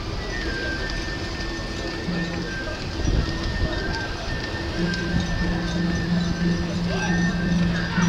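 A mikoshi procession's crowd of bearers, with rhythmic group chanting in short repeated phrases that grows more regular about five seconds in, over a long steady high whistle tone and dense street crowd noise.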